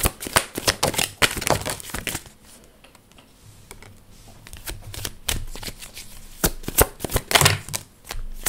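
Tarot cards being handled and laid down on a wooden tabletop: quick card snaps and taps, a quieter lull about two seconds in, then more taps and slaps toward the end.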